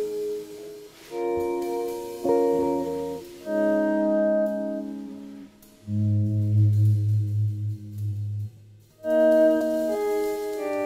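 Instrumental jazz ballad on keyboard: slow held chords that change every second or so, with a deep bass note sustained under the chord from about six seconds in.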